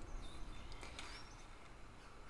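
Quiet room with a few faint, high bird chirps and one soft tap about a second in, as tarot cards are laid on a cloth-covered table.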